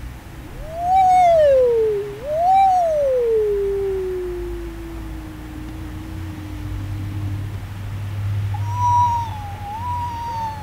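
Free-improvised music made of sliding pitched tones: two swooping rise-and-fall glides back to back, then a long slow downward slide that levels off and fades, and near the end a higher wavering tone, all over a low steady hum.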